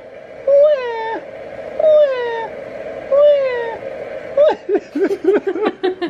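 An adult imitating a baby's wailing cry, four drawn-out 'waah' calls, each rising then falling in pitch, about a second apart, to test a SNOO smart bassinet's cry response; laughter breaks out near the end.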